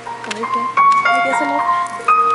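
Live instrumental introduction in a bell-like, music-box tone: a slow melody of sustained ringing notes, with a new note struck about every half second.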